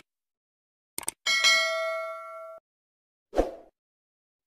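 Subscribe-button animation sound effect: two quick mouse clicks, then a bright notification-bell ding that rings for about a second and cuts off sharply, with a brief soft sound effect near the end.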